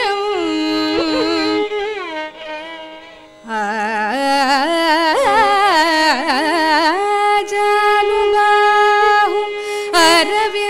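A woman singing a Carnatic devotional song, her voice sliding and shaking through ornamented notes over a steady drone, with violin accompaniment. The singing fades low about three seconds in, then comes back louder with wide, wavering runs.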